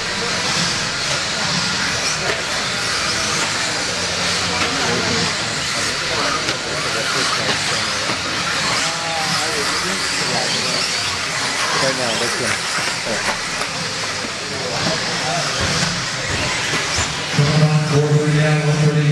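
A pack of electric Mod-class RC buggies racing on an indoor dirt track: a steady high hiss of motors and tyres, with motor whines gliding up and down as the cars speed up and slow for the corners.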